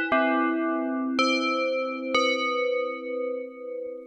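Dexed, a software emulation of the Yamaha DX-7 FM synthesizer, playing its 'Bells 3' preset: FM bell chords struck three times about a second apart. Each strike starts bright and its upper overtones fade, leaving a held chord.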